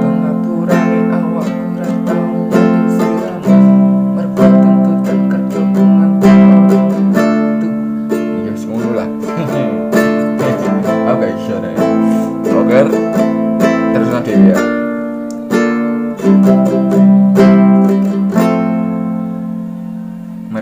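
Small six-string nylon-string guitar strummed in a steady rhythm of repeated down and up strokes, moving through a chord progression with a change of chord every few seconds.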